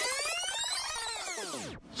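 Electronic transition sound effect: a layered synthesized sweep whose many tones rise in pitch and then fall away together, ending just before two seconds in.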